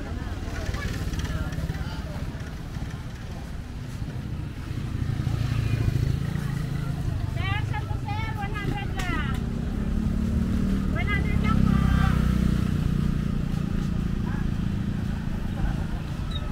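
Roadside street ambience: motorcycles and other road traffic passing close by. Their low rumble swells about five seconds in and again in the second half, with people's voices around.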